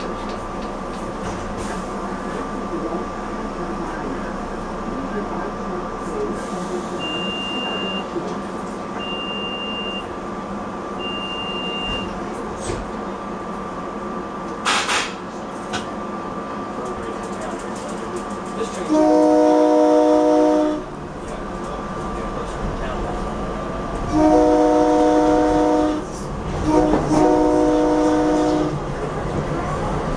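SEPTA Silverliner V electric multiple-unit commuter train heard from the cab, with a steady electrical hum and three short high beeps about eight seconds in. In the second half come three loud horn blasts of about two seconds each, several notes sounding together.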